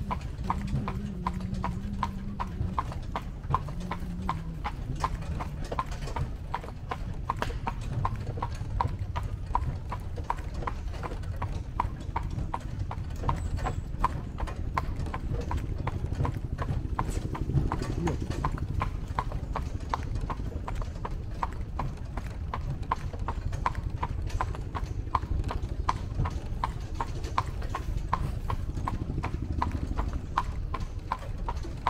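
A carriage horse's hooves clip-clopping on a paved path in a steady, even rhythm.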